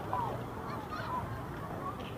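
Open-air crowd on a plaza: scattered people talking and calling out in the distance, with a few short high-pitched calls over a steady low background hum.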